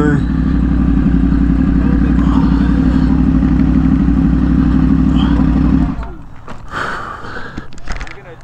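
Motorcycle engine idling steadily close by, its pitch unchanging, then cutting out suddenly about six seconds in. A few faint knocks and rustles follow.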